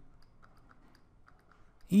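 Faint, scattered light clicks and taps of a stylus on a pen tablet while handwriting.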